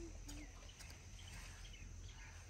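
Faint rustling of leafy garden plants being handled, over a low steady outdoor rumble, with a brief low hummed sound from a woman's voice in the first half second.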